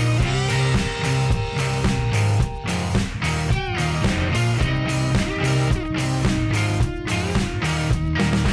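Background music with a steady beat and a stepping bass line.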